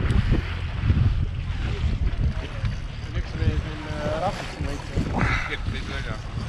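Steady low wind rumble on the microphone aboard a small motorboat trolling over choppy water, with faint voices in the background.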